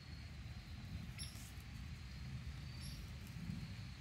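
Faint outdoor ambience: a low rumble on the microphone with two brief high-pitched chirps, about a second in and again just before three seconds.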